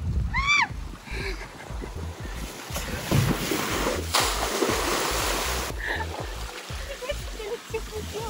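Water rushing and splashing as a rider comes down a water slide and plunges into the pool, loudest about four to six seconds in. A short high-pitched cry that rises and falls comes near the start, and voices follow the splash.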